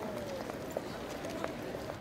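Railway station platform ambience: a low, steady background murmur with faint distant voices and a few soft ticks, such as footsteps.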